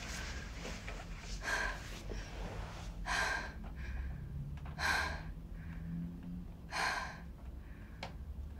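A woman gasping for breath on waking with a start: four heavy, airy breaths about two seconds apart, panicked and shaken.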